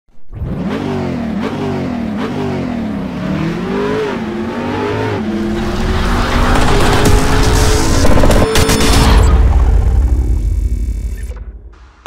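Car engine revving and accelerating: the pitch rises and falls several times as it runs up through the gears, then climbs steadily with a deep rumble before fading out near the end.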